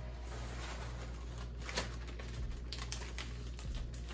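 Dry cereal pouring from a plastic bag into a plastic storage canister: a scatter of small clicks and rustles with bag crinkling, one sharper click a little under two seconds in.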